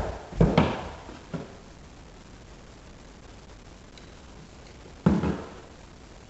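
Dull knocks of hand tools being handled against a drywall wall and a plastic ladder bucket. Two come close together in the first second, a lighter one follows soon after, and a louder one comes about five seconds in, when a level is set against the wall.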